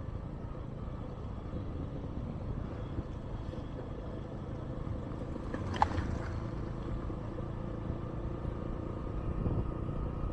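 A vehicle driving slowly over a rough gravel road: a steady low engine and road rumble, with one short, sharp sound about six seconds in.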